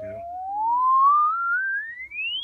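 1943 HP 200A audio oscillator's pure sine tone gliding steadily up in pitch as the frequency is turned, growing louder to a peak about a second in and then easing off a little: the output level shifts with frequency, which it is not supposed to do.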